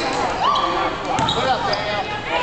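Basketball game sounds in a gym: voices calling out on and around the court over a few sharp knocks of the ball and play on the hardwood floor.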